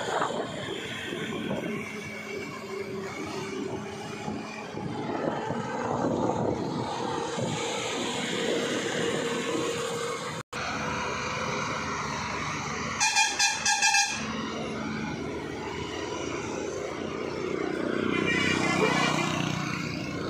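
Vehicle engines and tyre noise on a winding mountain road, heard from inside a following car. The sound breaks off for an instant at a cut about halfway. A few seconds later a vehicle horn gives several short toots in quick succession.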